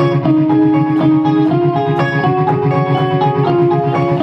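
Live pop-rock band playing an instrumental passage: keyboard and electric guitars holding chords over a drum kit's steady beat, with no vocals.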